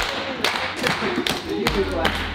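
Feet stamping on a wooden floor and hands clapping in a quick steady rhythm, about two or three knocks a second, with voices over it.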